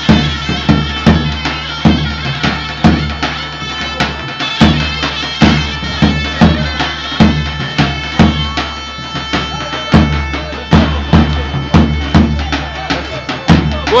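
Greek folk dance music played live: a loud reed wind instrument holds a sustained, ornamented melody while a daouli bass drum beats the dance rhythm with sharp, regular strikes.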